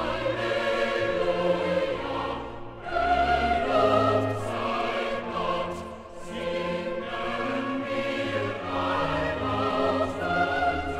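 Boys' choir singing Baroque sacred music with a period-instrument orchestra, in sustained phrases with short breaths between them.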